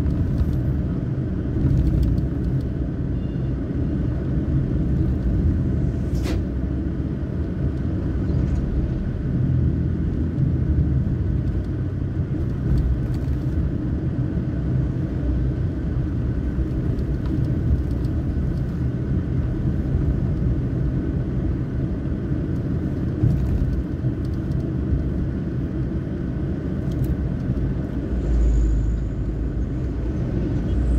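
Steady low rumble of a car driving along a road, with a few faint clicks.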